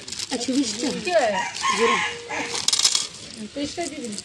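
Metal costume jewellery clinking and jingling as it is handled, in two short bursts, the louder about three seconds in.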